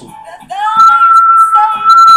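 A long, steady whistled note that starts about half a second in and holds on unbroken, one high pitch.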